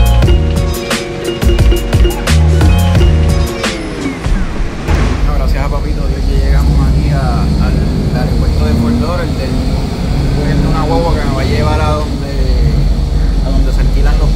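Background music with a beat whose pitch slides down and stops about four seconds in, then a man talking over the steady low rumble of a moving bus.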